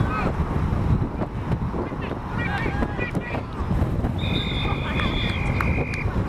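Wind buffeting the microphone, with distant players' shouts, then from about four seconds in a long, steady blast of a referee's whistle blown as the play ends in a tackle.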